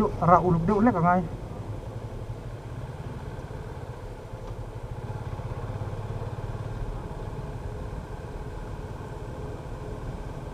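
Yamaha FZ-25's single-cylinder engine running steadily at a low cruising speed, with road noise, heard from the rider's position.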